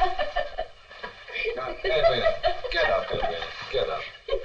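Voices talking: film dialogue that the recogniser did not write down.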